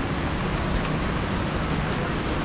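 Light rain and drizzle: a steady rushing hiss that does not let up.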